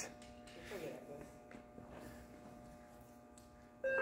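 Quiet room tone with a steady electrical hum and a faint voice about a second in. A countdown timer's beep starts just at the end.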